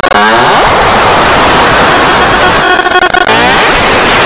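Loud, heavily distorted noise from an effects-processed cartoon soundtrack, with a sweeping whoosh near the start and a buzzy stretch a little before the end.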